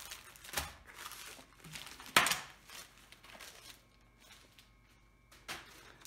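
Plastic packaging crinkling and rustling as it is handled: a padded plastic mailer and a small clear plastic bag. A few separate rustles, the sharpest and loudest about two seconds in.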